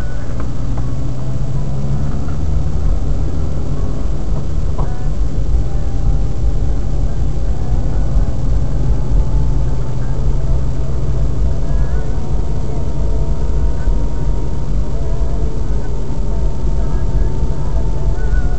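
Steady low rumble of a car's engine and tyres on a wet road, heard from inside the cabin while driving slowly. A faint, steady higher tone runs underneath from about five seconds in.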